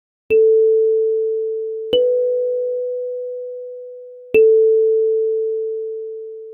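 Kalimba playing three slow single notes, A4, then B4, then A4 again. Each tine is plucked with a soft click and rings out as a pure tone that slowly fades.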